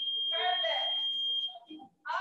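Digital interval timer giving one long, high, steady beep of nearly two seconds as it reaches zero, signalling the end of a work interval and the start of the rest period.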